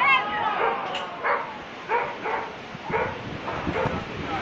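People's voices, with several short, sharp calls between about one and three seconds in.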